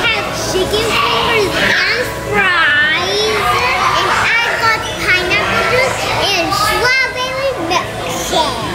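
Several children's voices at once, calling and chattering, with high pitches that rise and fall.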